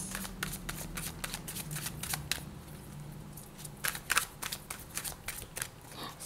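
A deck of tarot cards being shuffled by hand: a quick run of crisp card snaps and flutters, a short pause a little past halfway, then more shuffling near the end.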